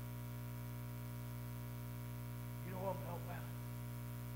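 Steady electrical mains hum, with a brief spoken word or two about three seconds in.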